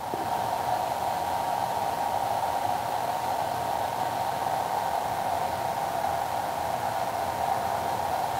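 A steady, even rushing noise, like a running fan, unchanging throughout.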